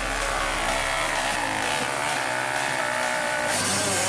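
Off-road dirt bike engine revving hard, its pitch rising and falling with the throttle as it claws up a steep loose-dirt climb.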